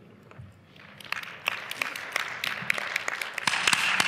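Audience applauding: a few scattered claps about half a second in, swelling into fuller applause that is loudest near the end.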